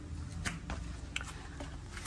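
Low steady background hum with a few faint clicks from a hand-held camera being moved.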